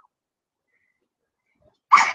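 Near silence: the sound drops out completely between two stretches of speech, and a woman's voice starts again near the end.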